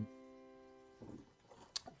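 A piano's C major chord (C E G) ringing on and dying away after being struck, fading out about halfway through. A faint click follows near the end.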